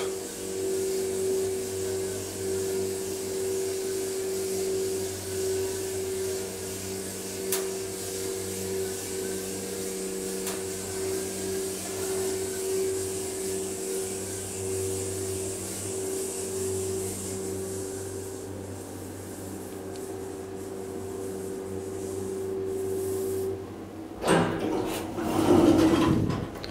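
KONE hydraulic elevator travelling slowly upward, heard from inside the car: a steady hum from the hydraulic pump unit with a high hiss. The hiss fades first and the hum cuts off a couple of seconds before the end as the car stops, followed by knocks and rattling as the landing door is opened.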